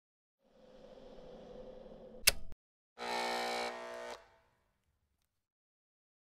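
An electric buzz that swells for about two seconds and is cut by a sharp click. After a brief gap comes a louder, harsher buzz that lasts about a second and fades out.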